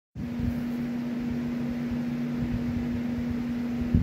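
A steady low hum at a single pitch over a faint low rumble: background room noise from a running machine.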